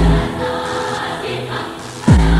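Electronic dance music with a held choir-like pad. A deep booming drum hit sweeps down in pitch at the start, and another lands right at the end, about two seconds later.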